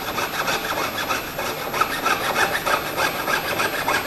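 Jeweller's piercing saw cutting a small piece held on the wooden bench pin, in quick, even up-and-down strokes, several a second.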